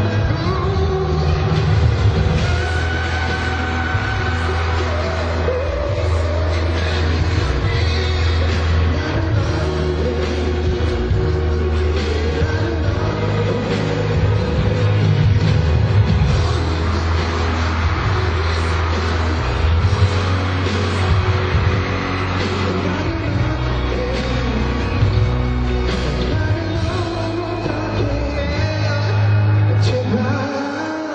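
Live pop music played loud through an arena sound system, with a heavy, steady bass and a male voice singing over the backing track. It is recorded from the audience.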